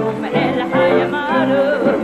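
A woman singing live in Hebrew with a wide, wavering vibrato and ornamented held notes, over instrumental accompaniment of steady sustained notes.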